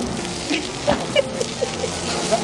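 Sausages sizzling on a gas barbecue's steel hotplate: a steady frying hiss, with a couple of sharp clicks about a second in as metal tongs turn them.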